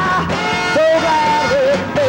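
Rock band playing: a wavering, bending melodic line over sustained low notes.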